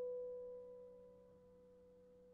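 A single piano note, struck just before and ringing on, slowly dying away; it is one of a slow run of lone notes spaced a couple of seconds apart. A faint steady low hum lies underneath.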